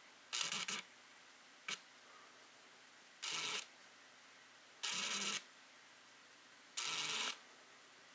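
Camera shutter firing: one short burst, a single click, then three half-second bursts about one and a half to two seconds apart, over faint hiss.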